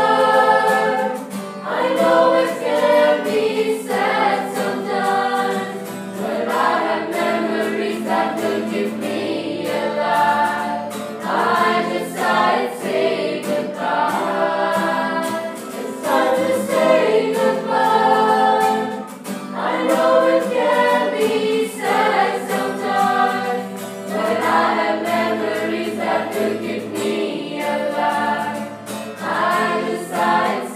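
A group of voices singing a farewell song together in chorus, in phrases of about two seconds each.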